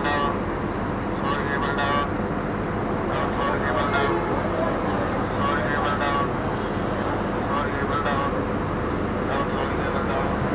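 Steady road traffic noise, with people talking over it at intervals.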